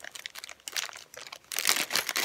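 Clear plastic zip bag crinkling and crackling as fingers work at its top. It starts as sparse crackles and gets louder and denser about one and a half seconds in.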